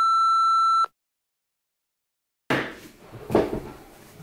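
A single steady electronic beep, about a second long, then dead silence. From about halfway on come room noise and one sharp knock as a person moves at a desk chair.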